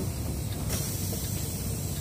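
Steady low rumble of a semi-truck's diesel engine heard from inside the cab. A steady high hiss joins it about two-thirds of a second in.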